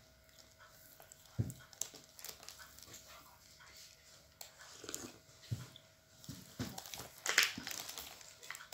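Faint, scattered knocks and rustles of tableware being handled: a soft low thump about a second and a half in, small clicks through the middle, and a louder brief rustle near the end.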